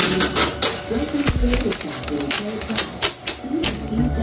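A voice carried in background music, over irregular clicks and crackles of protective plastic film being peeled off a new washing machine.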